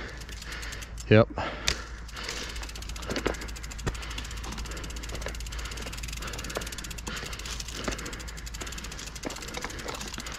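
Rear freehub of a Specialized Stumpjumper Evo Alloy mountain bike clicking in a rapid, even buzz as the rear wheel rolls without pedalling.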